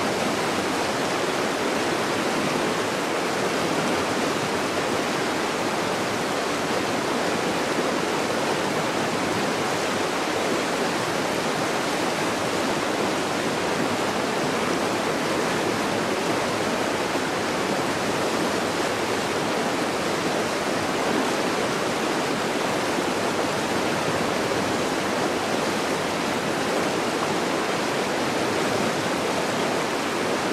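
Steady rushing of a fast-flowing river over its gravel bed, an even wash of water noise that does not change.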